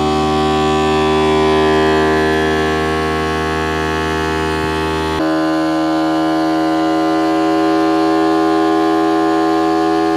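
Homemade four-coil Hall-sensor electromagnetic pulse motor running at high speed, a steady pitched whine with many overtones as its coils switch on and off in turn. Its tone changes abruptly about five seconds in. It is turning at nearly 5,000 rpm and still slowly gaining speed.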